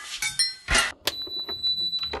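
Hanging wine glasses clinking and ringing as hands run along them, a quick patter of high glassy tones, followed about a second in by a single steady high ding held for about a second.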